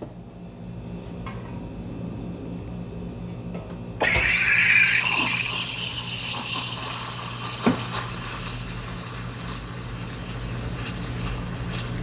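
Espresso machine steam wand opening about four seconds in and frothing milk in a stainless steel pitcher for a hot, 85 °C steam. A loud hiss comes first, then it settles into a steadier, quieter hiss with quick ticks. A steady low hum runs underneath throughout.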